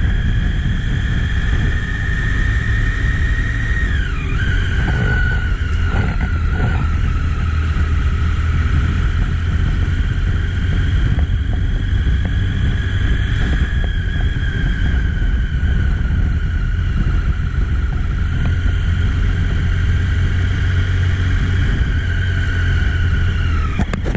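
Triumph three-cylinder motorcycle engine running at low road speed, heard from the rider's camera with a steady low rumble. A high whine drops in pitch about four seconds in and again near the end.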